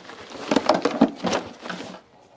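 Cable, a plastic socket block and a fabric bag being packed into a plastic crate: a quick run of clatters, knocks and rustles.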